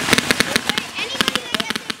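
Paintball markers firing in a fast, irregular run of sharp pops, with players' voices shouting over them.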